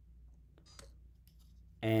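A few faint clicks a little past halfway over a low steady hum, then a man's voice starts near the end.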